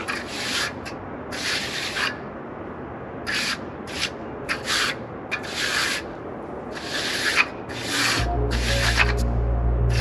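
Hand trowel scraping across wet concrete in short, uneven strokes, about one a second, as a fresh slab is finished. Background music comes in about eight seconds in.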